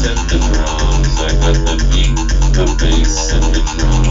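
Electronic drum and bass track playing without vocals: a heavy sustained bass under drums and a fast repeating synth pattern made in Massive, at about eight hits a second. A sung vocal comes back just at the end.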